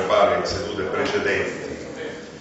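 Speech: a man talking in a room, his words indistinct.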